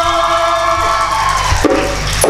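A male singer holds the long closing note of a mawal, which bends slightly and fades out about a second in. Near the end, frame drums (rebana) come in together.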